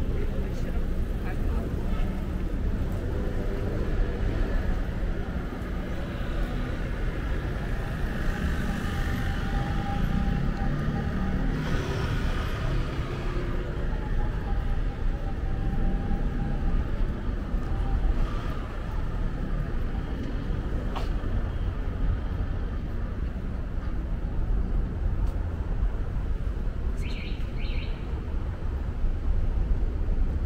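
City street ambience: a steady low rumble of passing traffic with indistinct voices of people nearby.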